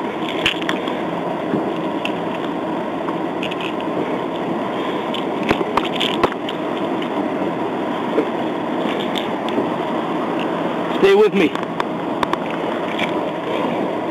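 Steady noise on a police dashcam recording system's microphone, with scattered short clicks and a brief voice about eleven seconds in.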